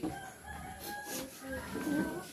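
A rooster crowing: one long, wavering call.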